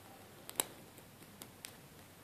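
Faint, sharp clicks of a homemade feeler-gauge lock pick setting the pin tumblers of an Abus 85/50 brass padlock under bottom-of-keyway tension, about five ticks with the loudest a little over half a second in. These are pins being set as the lock goes into a false set.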